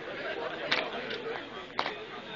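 Castle Guard soldiers' boot heels striking stone paving as they march, two sharp strikes about a second apart, over crowd chatter.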